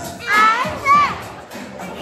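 Children's voices: two loud, high-pitched cries with bending pitch in quick succession in the first second, over background music and children's chatter.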